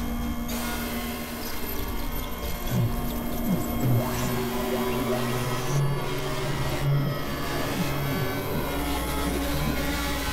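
Experimental electronic drone music from synthesizers (Novation Supernova II, Korg microKorg XL): held steady tones over a noisy hiss. From about three seconds in, lower notes come and go with short slides in pitch. Near the end a deep low drone fills in.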